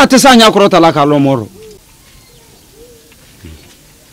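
A voice speaks loudly for about a second and a half. Then, in the quiet, come a few faint, low bird calls.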